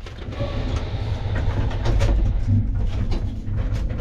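Old, rickety passenger elevator running: a low rumble with scattered rattles and clicks from the car.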